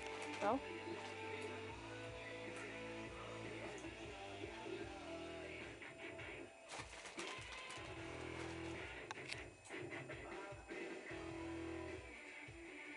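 Quiet guitar music, with sustained chords over steady low notes.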